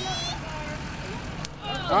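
Low, steady rumble of slow-moving pickup trucks passing close by, with a voice briefly at the start and again near the end.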